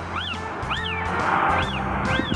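A very young kitten, its eyes not yet open, mewing: short high calls that rise and fall, three in quick succession, over background music.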